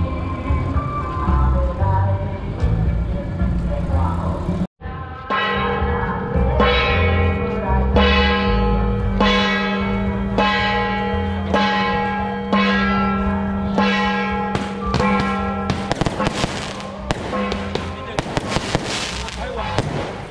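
A hand-held brass gong, the kind the baoma herald strikes to announce an approaching temple procession, struck in a slow steady rhythm about once a second, each stroke ringing on. Near the end a string of firecrackers goes off in rapid cracks.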